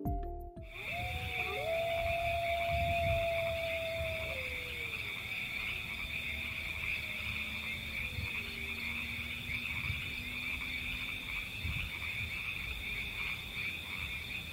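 Steady night chorus of frogs, a continuous high trilling. A long call glides slowly down in pitch over the first few seconds, with a fainter falling call around the middle. A short musical logo sting ends at the very start.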